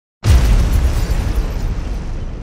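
Cinematic explosion sound effect for a show intro: a sudden blast a moment in, followed by a deep rumble that slowly dies away.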